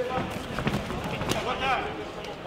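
Voices shouting in a sports hall, with several sharp thuds of kickboxing punches and kicks landing, the loudest a little past halfway; a short shout follows near the end.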